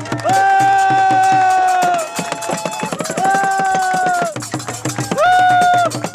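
Djembe hand drums playing a fast, steady rhythm, with three long, high-pitched held tones sounding over it, each sliding up at the start and dropping off at the end.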